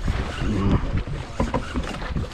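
Wind rumbling on the microphone aboard a small fishing boat on choppy water, with two short bits of muffled voice.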